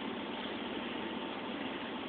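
Steady hiss of the recording's background noise, with no distinct sound in it.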